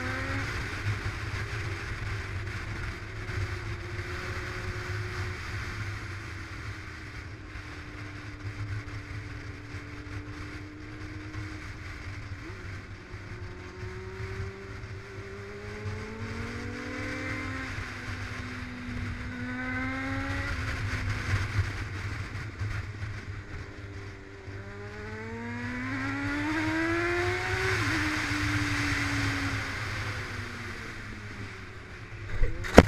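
Motorcycle engine heard from a camera mounted on the bike, its note rising as it accelerates and dropping at each gear change, several times over, with the longest and loudest climb near the end. Steady wind rumble on the microphone runs underneath.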